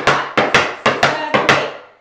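Metal taps on tap shoes striking a wooden tap board in a run of flaps: a quick series of about eight sharp taps that stops about one and a half seconds in.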